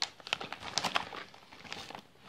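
Plastic outer bag of a sealed military ration pack crinkling as it is turned over in the hands: a string of irregular, quiet crackles and clicks.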